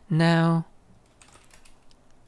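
A man's voice holds a sung note for about half a second at the start, then soft computer-keyboard typing: faint, scattered key clicks.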